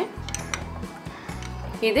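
A metal spoon stirring in a glass bowl of warm cream and melted white chocolate, with a few light clinks against the glass, over soft background music.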